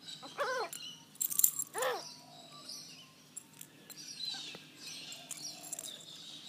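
Faint birdsong outside, with two short pitched calls that rise and fall, about a second and a half apart, near the start. A brief loud rustle comes between them.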